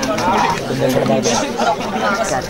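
Many overlapping voices of a crowd of spectators talking and calling out at once, with no single voice standing clear.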